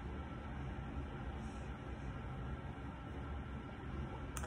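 Steady low background hum of room noise, with no distinct event.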